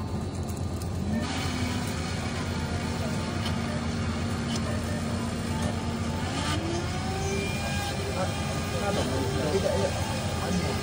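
7-Eleven self-service smoothie machine blending a cup of frozen fruit. Its motor spins up about a second in and runs at a steady hum, then speeds up to a higher pitch about six seconds in.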